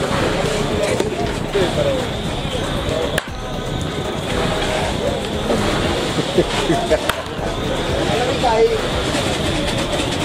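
Baseball bat striking pitched balls in batting practice: a sharp crack about three seconds in and another about seven seconds in, over a steady background of music and voices.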